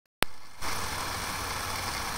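A sharp click just after the start, then steady background room tone: an even hiss with a low hum underneath.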